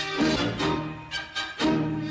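Orchestral film score led by bowed strings, moving through a series of distinct notes about every half second.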